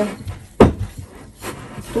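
Dough being kneaded by hand in a glass bowl, with one sharp knock about half a second in, then quieter scuffing of hands working the dough.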